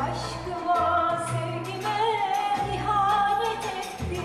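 A female soloist singing a Turkish art music (Türk Sanat Müziği) song with a wavering, ornamented line, accompanied by a traditional ensemble with sustained low bass notes under the voice.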